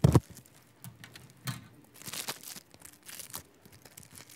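A short knock at the start, then several brief crinkling rustles of a plastic bag being handled and opened.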